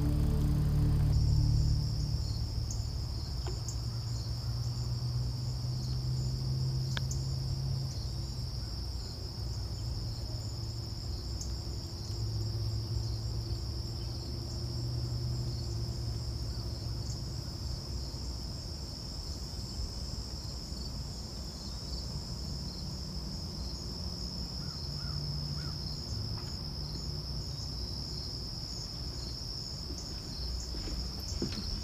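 A steady, high insect chorus of crickets trilling, unbroken throughout, over a low uneven rumble.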